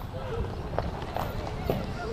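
Young rugby players' short shouts and calls at a ruck, with a few brief knocks, over a steady low rumble.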